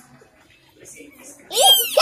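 Young kitten meowing: after a quiet stretch, one high-pitched cry rising and falling in pitch starts about one and a half seconds in.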